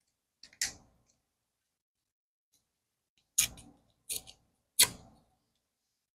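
Craft paper being handled, folded and torn by hand: four short, sharp crackles spread over a few seconds, with silence between them.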